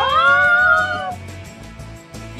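Two young men belting a held, wailing sung note: the voice slides up at the start, holds for about a second and then fades, over a rhythmic accompaniment.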